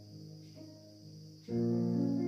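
Pre-recorded instrumental backing track for a song cover: held notes fade away, then a louder chord comes in about one and a half seconds in.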